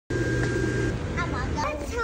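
A steady low hum with a thin high whine for about the first second, then a young child's high voice.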